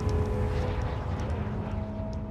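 A deep, low rumble with a few steady held tones over it, fading out gradually: a dramatic rumbling sound effect or drone.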